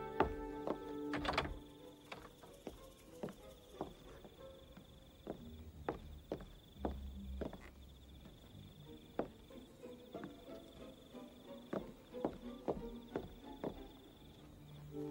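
Slow, irregular footsteps and knocks on a wooden boardwalk, with a faint steady high tone behind them. Film score music fades out in the first second or two and comes back just after the end.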